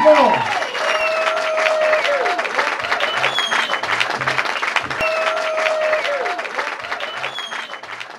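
Audience applauding and cheering, with held shouts and a couple of short whistles over the clapping. The applause slowly fades down toward the end.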